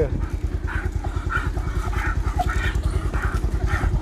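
Motorcycle engine running at low speed with a steady throb, and a dog panting rhythmically as it trots alongside.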